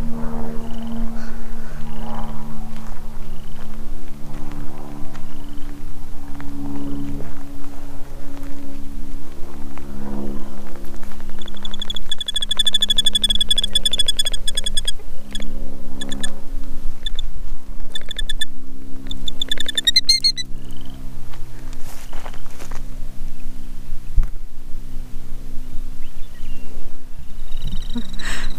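Background music with sustained low chords. Over it, a killdeer's high, shrill trilling call about twelve seconds in, lasting about three seconds, followed by several sharper high calls.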